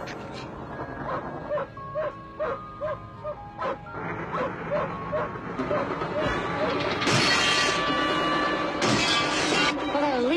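A dog barking and whining over film music, with short calls about twice a second early on. Near the end a louder rush of noise comes in, the sound of the dog tearing at the inside of the car.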